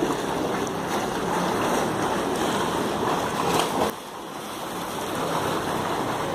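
Pool water splashing from a swimmer's strokes and kicks, a steady noisy wash that drops off suddenly about four seconds in.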